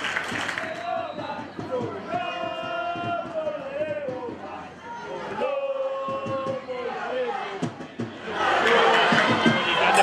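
Voices shouting and calling out across a football pitch during play, several drawn-out calls held for about a second each. The shouting and crowd noise grow louder and denser near the end.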